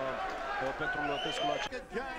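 Speech: a man's voice talking, with no other clear sound standing out.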